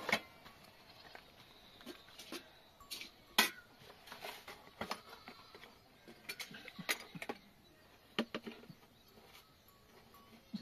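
A series of short, irregular knocks and clicks, about a dozen in all, the loudest about three and a half seconds in.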